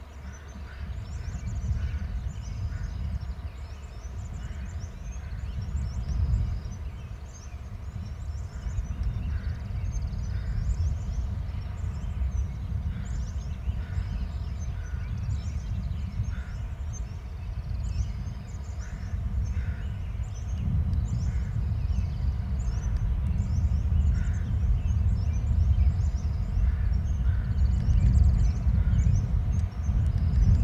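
Birds chirping, many short calls scattered throughout, over a steady low rumble that grows louder in the second half.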